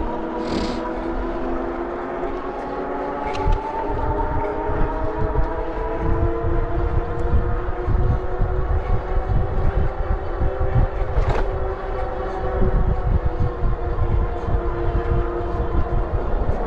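Motorcycle engine running at a steady cruise, its drone drifting slightly in pitch. Wind rumbles on the microphone from a few seconds in.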